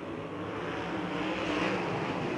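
A pack of non-wing USAC sprint cars' V8 engines running at full throttle together, many engine notes overlapping and growing louder as the field races past.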